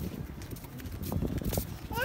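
Footsteps and rustling on pavement, uneven and fairly soft; right at the end a baby breaks into a high, wavering wail.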